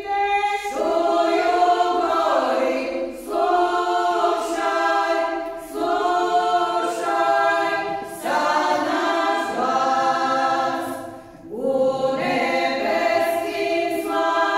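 Women's folk choir singing a traditional church song a cappella, in phrases of two to three seconds with short pauses for breath between them.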